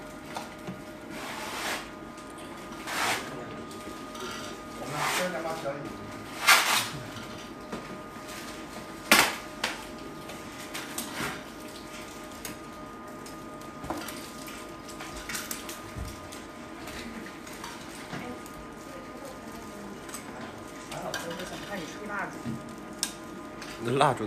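Dishes, bowls and cutlery clinking as the table is set for a meal, with a few sharp clinks standing out among lighter clatter. A faint steady hum runs underneath.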